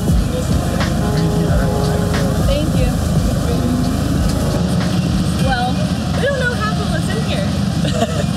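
Busy outdoor market ambience: a steady low rumble under the background chatter of a crowd, with voices coming through more clearly over the last few seconds.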